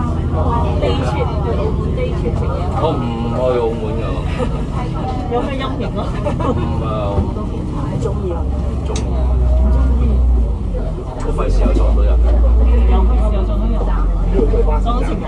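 Cummins ISL diesel engine of an Alexander Dennis Enviro500 MMC double-decker bus running, heard from on board as a steady low drone that grows louder about two-thirds of the way in. People talk over it throughout.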